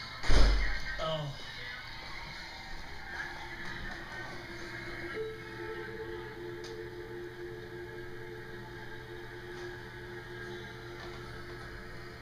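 Television broadcast audio in a room: soft background music with long held notes coming in about five seconds in. A loud thump about half a second in.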